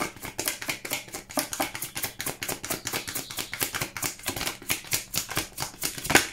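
A tarot deck being shuffled by hand: a quick, even run of soft card-on-card clicks, several a second.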